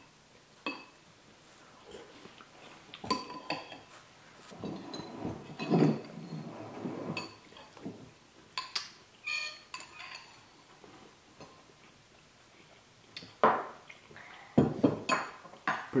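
Metal spoons clinking and scraping against ceramic soup bowls: irregular single clinks a second or more apart, with softer stretches of eating in between.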